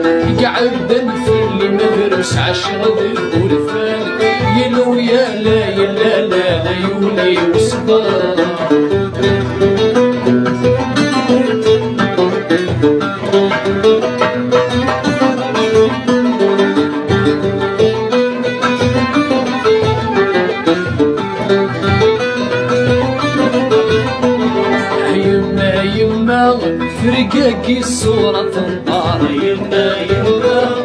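Music: a man singing a melodic song with plucked-string accompaniment over a steady low beat.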